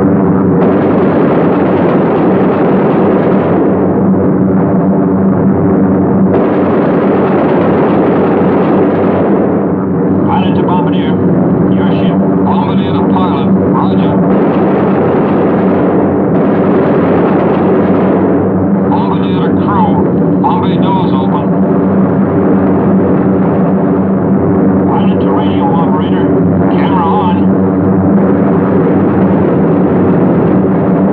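Steady drone of a B-17 Flying Fortress's four radial engines, heard from inside the bomber during the bomb run.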